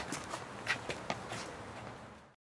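Footsteps and scuffling: a few irregular short clicks and scuffs over a faint hiss, growing fainter toward the end.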